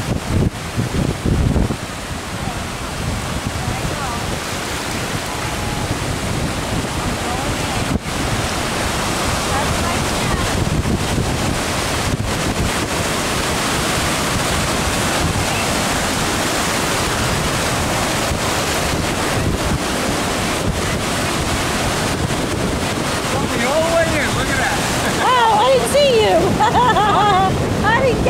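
Ocean surf breaking and washing into the shallows: a steady rush of water. Wind buffets the microphone for the first couple of seconds.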